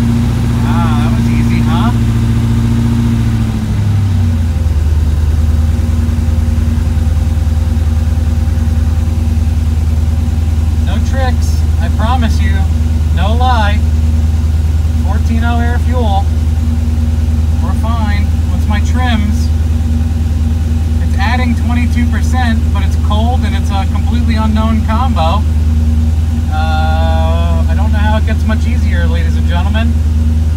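Turbocharged LS V8 running just after its first start on a fresh Holley Terminator X base tune. It holds a fast idle of about 1,750 rpm, then drops to a steady idle around 1,180 rpm about three and a half seconds in.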